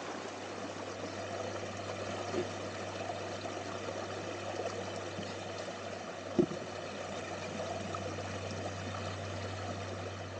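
Creek water rushing over rocks and through a sluice box, over a steady low hum. There is a faint knock about two and a half seconds in and a sharp, louder knock about six and a half seconds in.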